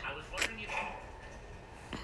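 Faint, indistinct voices, with a short sharp click about half a second in and a weaker one near the end.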